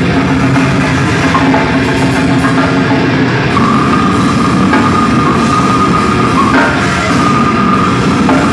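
Metal band playing live and loud: distorted electric guitars, bass and drum kit in a dense wall of sound, with the singer's vocals into the microphone. A sustained high note rings over the mix from about halfway, with a brief break near the end.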